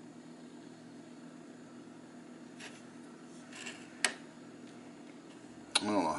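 Small metal pocket lighter handled in the fingers: faint rubbing, a sharp click about four seconds in and another near the end, over a steady low hum.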